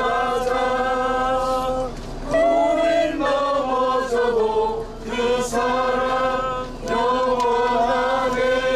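A group of people singing a worship song together, in long held notes.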